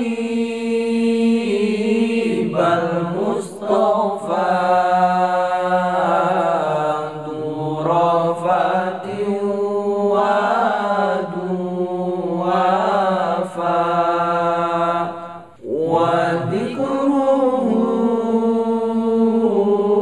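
Male voices singing an Arabic sholawat unaccompanied, drawing out long, wavering melodic lines. There is one brief break in the singing about three-quarters of the way through.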